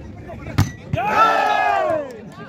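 A volleyball struck hard once, a sharp smack, then about half a second later a loud shout goes up from the spectators, the voices falling in pitch as it fades.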